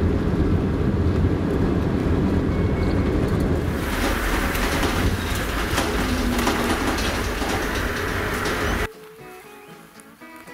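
A vehicle driving on a dirt road, heard from inside the cab: a loud, steady rumble of tyres and rattle. About four seconds in it turns harsher and hissier. It cuts off suddenly near the end, leaving quieter music.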